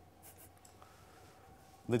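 Near silence: room tone with a faint steady hum, until a man's voice begins near the end.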